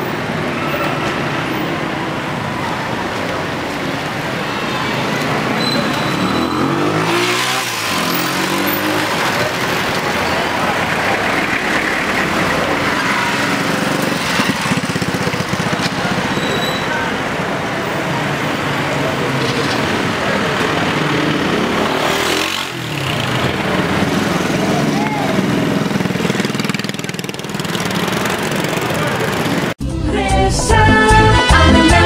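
Busy town-street traffic: small motorcycles and cars running and passing close, twice going right by, with people's voices in the street.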